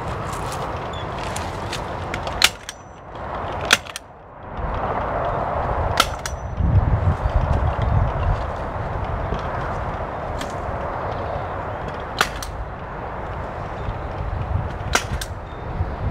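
Hand staple gun firing staples through debris netting into wooden posts: sharp single snaps, about six spread over the stretch, two of them in quick succession. Wind buffets the microphone between them.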